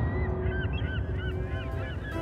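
A flock of birds calling: many short, overlapping calls over a low rumble.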